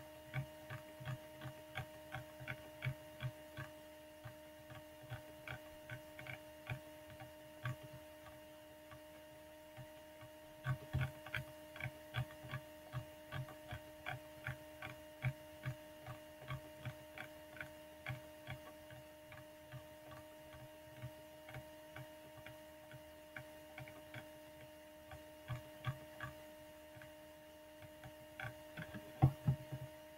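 Computer mouse scroll wheel clicking in uneven runs of a few ticks a second, over a steady electrical hum.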